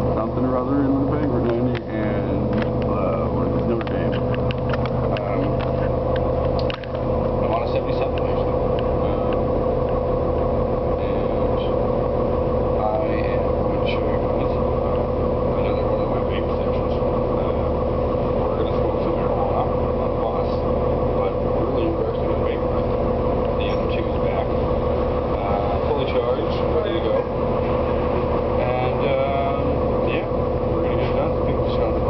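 City bus running in motion, heard from inside the passenger cabin: a steady engine and road drone with one constant hum-tone running through it. A voice talks faintly underneath.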